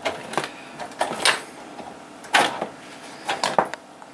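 Cables being unplugged from a desktop computer: several irregular clicks and knocks as plugs and connectors are pulled out and handled.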